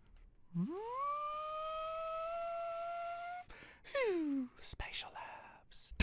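A single voice-like pitched note swoops up, is held for about three seconds while it creeps slightly higher, then breaks off; a second, shorter note slides downward about a second later.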